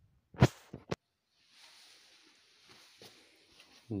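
A loud short knock about half a second in, followed by two smaller clicks, then faint rustling.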